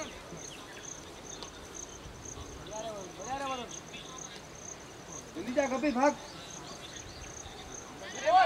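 An insect chirping steadily at a high pitch, about four chirps a second. Over it, voices call out twice, once about three seconds in and louder near six seconds.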